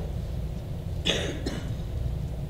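A single short cough about a second in, over a steady low hum.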